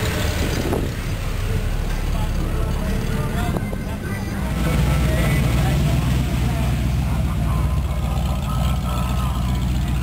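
Hot rod engines running through open exhaust as the cars roll slowly past, a steady low rumble that gets louder about halfway through as a second car passes close.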